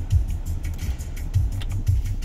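Suzuki Swift 1.3 petrol four-cylinder engine idling, heard as a low rumble inside the cabin, with a few faint clicks as the automatic climate control's AUTO button is pressed.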